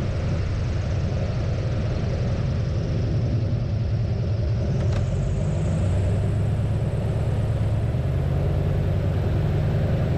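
Waco YMF-5's Jacobs radial engine running steadily at low power while the floatplane rolls on the ground, with wind rushing through the open cockpit. It grows slightly louder about six seconds in.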